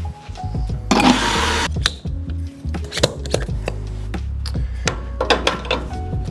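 Background music, with a short hiss from the espresso machine about a second in, followed by scattered clicks and clinks of espresso cups and the portafilter being handled at the group head.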